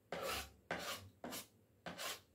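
Knife blade drawn through a piece of papaya held in the hand, four quick strokes, the first the longest.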